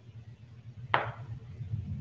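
A single sharp plastic knock about a second in as a tube of silicone is squeezed into a plastic container, over a low rumble of hand handling that grows louder.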